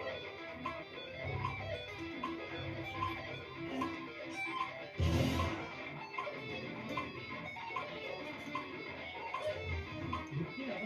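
Electric guitar played note by note, over a steady click every 0.8 seconds or so, marking 75 beats per minute. About halfway through there is a brief, louder, noisy hit.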